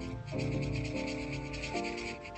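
Marker tip rubbing back and forth on paper in quick scratchy strokes, over soft background music of held notes.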